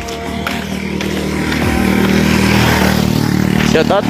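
Small motorcycle engine running, growing louder over the first couple of seconds and then holding steady. A voice starts near the end.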